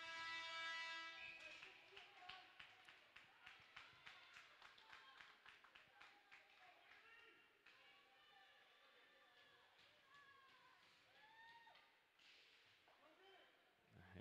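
Faint ice rink sound during play: a held tone fades out over the first second or so, then a run of sharp taps over the next several seconds, then faint distant voices.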